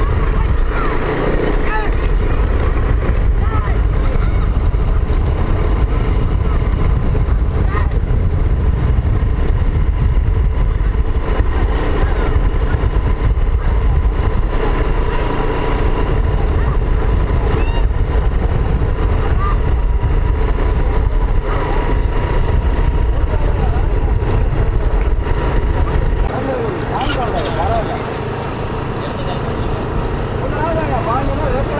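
Loud, steady rumble of a moving vehicle with wind on the microphone, with men's voices calling over it. The deep rumble drops away about 26 seconds in.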